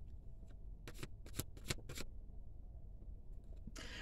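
Tarot cards being handled as a card is drawn from the deck: a cluster of quick, sharp clicks and snaps of card stock about one to two seconds in, with a few fainter ones around them.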